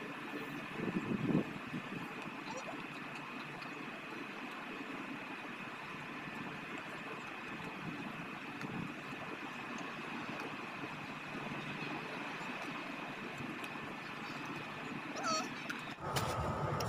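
Quiet outdoor background with a faint, steady high-pitched hum, and one short, louder low sound about a second in.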